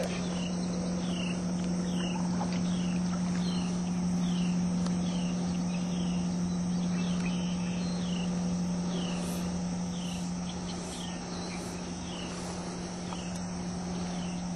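Insects droning steadily in summer vegetation, with a steady low hum underneath and a short falling chirp repeated about three times every two seconds.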